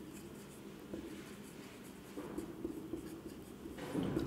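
Marker pen writing on a whiteboard: faint, uneven strokes of the felt tip across the board.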